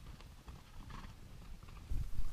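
Faint, irregular hoofbeats of a herd of horses walking over stony ground.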